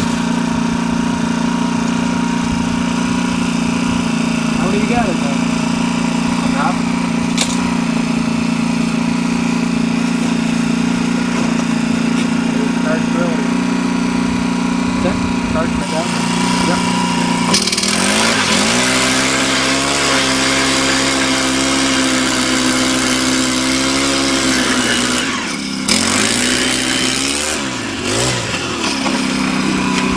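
StrikeMaster gas-powered ice auger engine idling steadily for about the first 17 seconds. It then revs up and runs under load boring through the ice, its pitch sagging and recovering, with brief dips near the end as the hole goes through.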